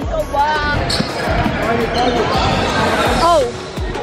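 Basketball bouncing on a hardwood gym floor, several thuds at uneven spacing, under voices.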